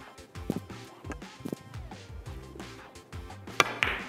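A cue striking the cue ball in a three-cushion carom billiards shot, followed by scattered sharp clicks of the balls knocking against each other and the cushions; the loudest click comes near the end. Background music plays underneath.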